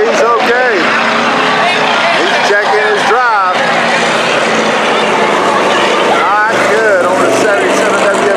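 Dirt-track hobby stock race car engine running steadily at low speed, with a public-address announcer's voice coming and going over it in short phrases.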